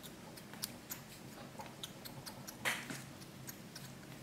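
Faint, scattered small ticks and rustles of fly-tying thread being wrapped tight over a bunch of hair to bind down a wing, with one louder rustle a little past halfway.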